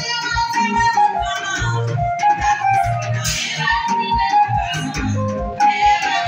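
Live lingala-style gospel band music: an electronic keyboard playing a bright melody over a steady, quick drum beat, with a woman singing through an amplified microphone.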